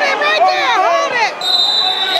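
Spectators yelling, high voices swooping up and down in pitch. About one and a half seconds in, the yelling gives way to a steady, high-pitched whistle blast from the referee.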